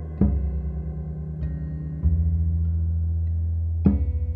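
A band playing the slow instrumental opening of a song: low sustained notes with a fast, even tremolo pulse. A new note is struck about a quarter second in, again about two seconds in, and once more near the end, and each time the harmony shifts.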